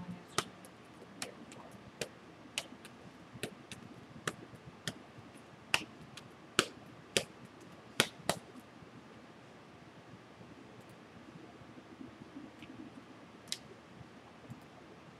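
A string of short, sharp taps, roughly one a second, the loudest coming about six to eight seconds in, then a single tap near the end: a stir stick knocking against a plastic resin cup while the last of the epoxy resin is poured and scraped out into a silicone mold.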